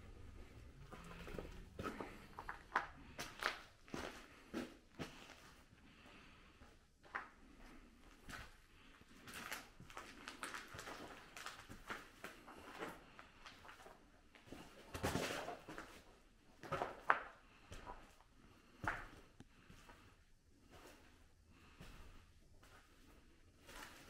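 Footsteps crunching and scuffing over debris on a littered floor, with irregular knocks and clatters. A denser run of crunching comes a little past halfway, followed by one sharp knock.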